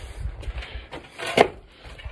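Handling noise from a phone camera being swung about, with scuffing steps on a rubble-strewn floor. One sharper scuff or knock comes about one and a half seconds in.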